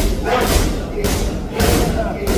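Boxing gloves striking focus mitts: a run of sharp smacking hits, about two a second.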